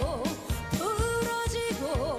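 Live trot song: a singer with a backing band over a steady drum beat, with held notes and wavering melodic turns.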